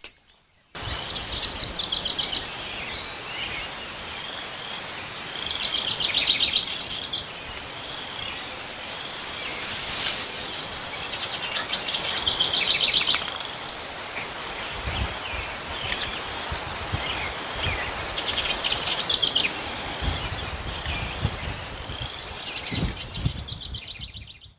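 Songbirds singing, about four short phrases of rapid high notes a few seconds apart, over a steady outdoor hiss. A few low rumbles come in the second half.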